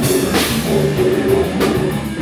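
Live heavy rock band playing loud: drum kit driving under a held, distorted guitar note, with cymbal crashes near the start and again near the end.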